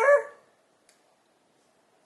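The drawn-out end of a woman's spoken word, trailing off in the first half-second, then near silence with one faint click about a second in.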